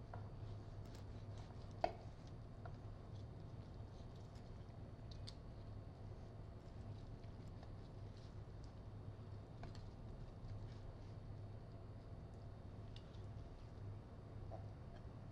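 Faint sounds of a carving knife slicing roast poultry thigh meat from the bone on a cutting board, with a few light clicks of the blade, the sharpest about two seconds in, over a low steady hum.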